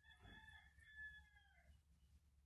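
Faint, drawn-out animal call lasting about a second and a half, over near silence.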